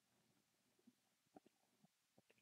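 Near silence, with a few faint short crinkles and ticks from a foil trading-card pack being torn open in gloved hands.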